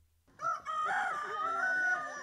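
A rooster crowing: one long, drawn-out crow that begins shortly after the start and trails off.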